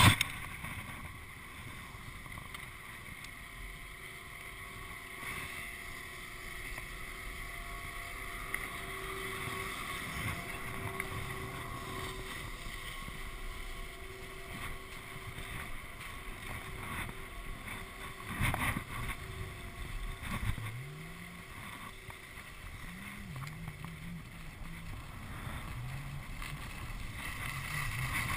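Skis sliding over packed snow with wind buffeting the microphone of a chest-mounted action camera, growing louder near the end as the skier picks up speed. A sharp knock sounds right at the start.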